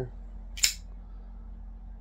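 A single short, sharp click about two-thirds of a second in, over a low steady hum.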